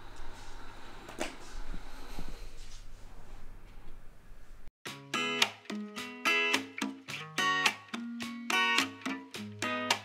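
Yeedi Vac Max robot vacuum running with a steady low hum and a click about a second in. Just under halfway the sound cuts off abruptly and background music of plucked-string notes takes over.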